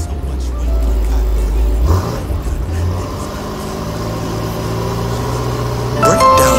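BMW M5's twin-turbo V8 idling with a deep, steady exhaust rumble just after being started, with a brief rise in revs about two seconds in.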